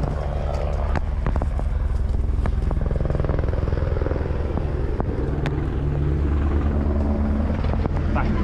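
Police helicopter rotor running overhead, a loud steady low throbbing picked up by an officer's body camera, with a few light clicks of gear.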